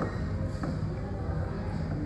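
Restaurant room noise: a steady din with indistinct voices, and a light click about half a second in.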